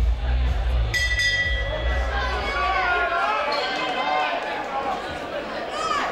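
Loud, bass-heavy music over the arena speakers stops about a second in. A single struck bell rings at the same moment, typical of the round bell, and fades over about a second. After that, several voices call out across the hall.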